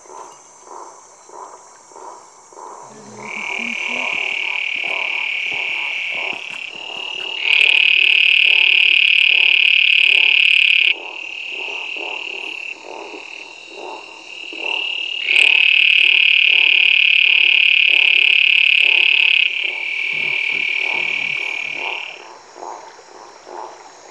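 Toad calling: long, high, steady trills of several seconds each, the two loudest starting about seven and fifteen seconds in, with quieter trills between them. A lower call pulsing about twice a second runs underneath.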